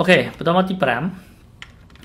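A man's voice speaking briefly, then a few soft clicks from a computer being operated near the end.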